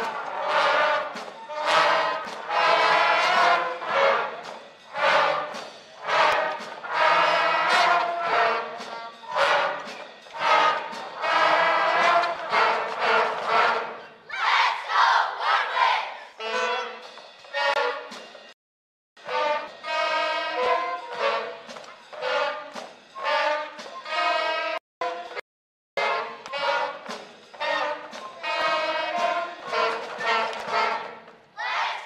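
Fourth-grade school concert band of woodwinds, brass and percussion playing a lively tune in short, clipped phrases. There are brief breaks in the sound about two-thirds of the way through.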